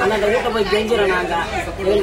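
A woman speaking steadily in Tamil.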